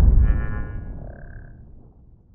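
Logo intro sound effect: the low rumble of a deep boom fading away, with a short bright shimmering chime over it that dies out about a second and a half in.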